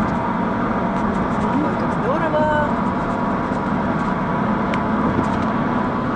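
Steady road and engine noise of a car driving at speed, heard inside the cabin, with a brief faint voice about two seconds in.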